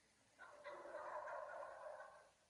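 A short burst of laughter, choppy and high-pitched, starting about half a second in and lasting about a second and a half.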